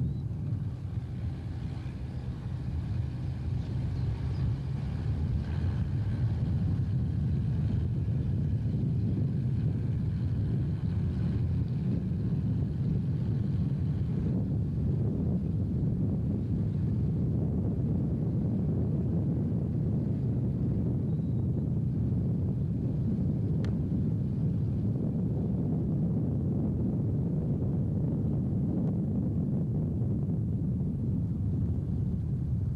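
Car engine and road noise heard from inside a moving car: a steady low rumble, with a faint high whine over the first dozen or so seconds.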